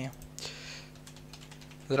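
Computer keyboard typing: a short, quick run of faint keystrokes as a single word is typed, over a low steady hum.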